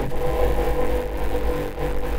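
Steady electronic drone: a deep, continuous rumble with a held mid-pitched tone above it.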